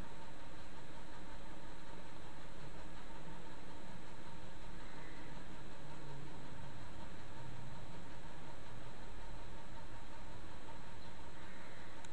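Steady hiss of microphone and room noise with a faint hum, unchanging throughout, with no distinct events.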